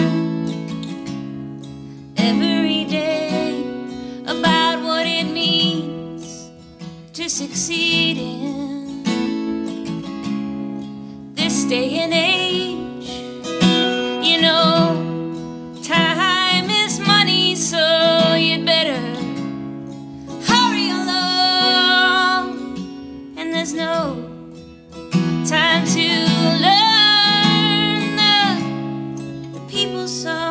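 A woman singing a folk song in phrases a few seconds long, accompanying herself on a strummed acoustic guitar that keeps playing between the lines.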